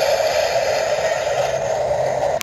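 A Halloween light-up prop's try-me sound effect playing from its small speaker: a steady crackling hiss.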